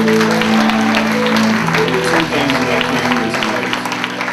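Congregation applauding over worship-band music holding long sustained chords, the chord shifting about a second and a half in.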